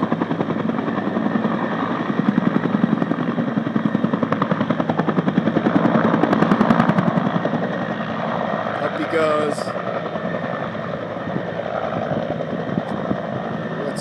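Firefighting helicopter carrying a full water bucket, flying low nearby, its rotor blades beating rapidly and steadily. The beat is loudest in the first half and eases a little after about eight seconds.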